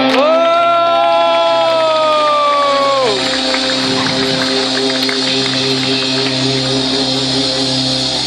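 Live rock band ending a song: the drums stop, a held note slides down in pitch and fades about three seconds in, and steady low tones ring on with crowd noise underneath.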